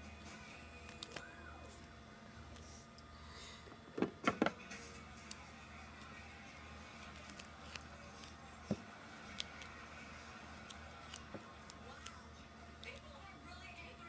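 Handling of duct tape and scissors on a tabletop: a quick cluster of sharp knocks and snips about four seconds in, another near nine seconds, and small clicks between, over faint background music.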